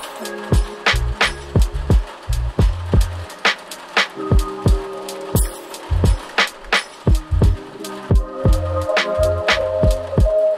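Chill hip hop beat: a steady drum pattern of kicks and snares over a deep bass line, with held chord tones above.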